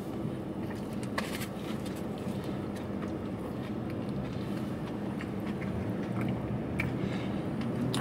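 Chewing a bite of crunchy breaded fried chicken sandwich with the mouth closed, with a few faint crunches. A steady low hum inside a car cabin runs underneath.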